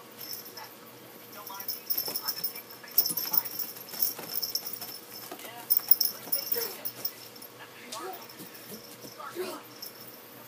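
A kitten scrabbling and clawing on a carpeted cat tower while it spins after its tail and a string. The scrabbling comes in bursts of rattly scratching with a light metallic jingle, most likely the tag on its collar, loudest about three and six seconds in.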